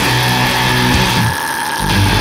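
Black metal music: a dense wall of distorted guitars and drums, with the low end dropping out for about half a second midway.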